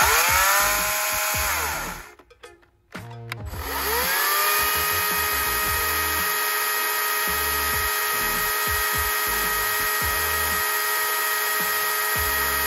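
ECHO DCS-310 40V cordless chainsaw's electric motor spinning up with a rising whine and stopping within about two seconds as the chain brake is tested. After a few clicks it spins up again about four seconds in and runs at a steady high whine, the chain turning freely for a chain-lubrication check.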